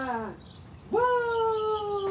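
A cat's long, drawn-out meow, slowly falling in pitch. One meow dies away just after the start, and another begins about a second in.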